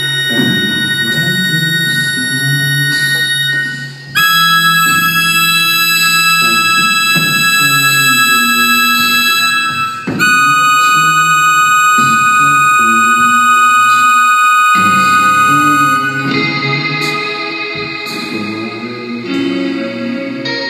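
Live instrumental music: a keyboard holding long chords that change about every six seconds, with guitar underneath.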